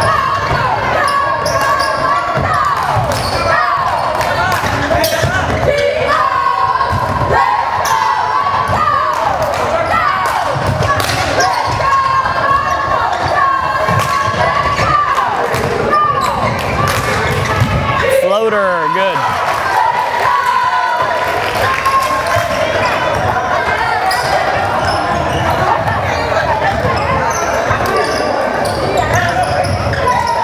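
A basketball dribbling and bouncing on a hardwood gym floor during live play, with many short, high squeaks from sneakers on the court and the echo of a large gym.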